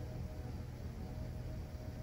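Quiet room tone: a faint, steady low hum with a light background hiss.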